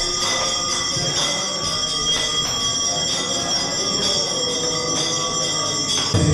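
Dense, steady metallic ringing of temple hand bells and hand cymbals (kartals), with no singing until just after the end.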